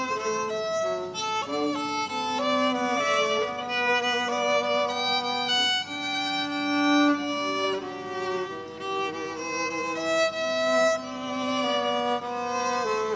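Two violins playing a duet, bowed notes moving through a melody in two parts at once, with the notes held and changing every half second to a second or so.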